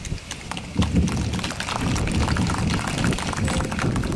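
Wind buffeting the microphone: a heavy, uneven low rush that strengthens about a second in, with scattered crackles.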